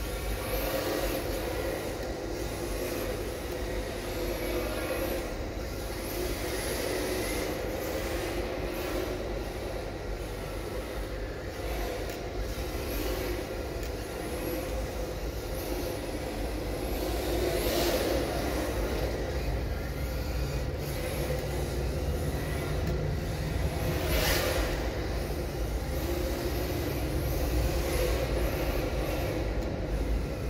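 Electric RC drift car's brushless motor whining up and down in pitch as it is throttled through drifts, with tyre noise on concrete. Under it runs a steady background hum, and a deeper rumble grows louder about twenty seconds in.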